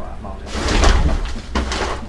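Two scraping, knocking bursts of wooden panels being shifted about by hand, the first about half a second in and the second near the end.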